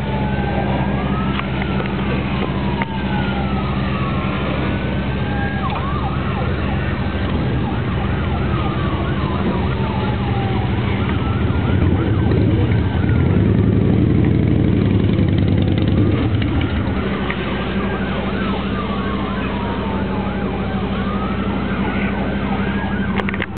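Emergency vehicle siren on a slow wail, rising and falling again and again, over a steady low engine hum that grows louder for a few seconds past the middle.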